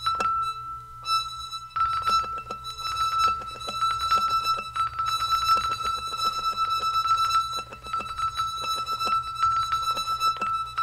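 A single high note played as a fast tremolo roll, with many quick, sharp attacks over the held pitch. The attacks are sparse at first and become a dense, continuous roll from about two seconds in.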